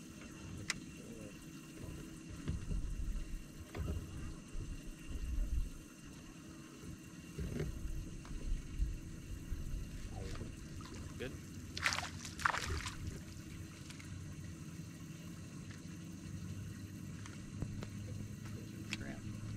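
Water lapping and wind rumble around a bass boat on open water. About twelve seconds in come two short, sharp rushing sounds.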